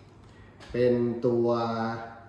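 Only speech: a man talking in Thai, starting after a brief quiet stretch of room tone.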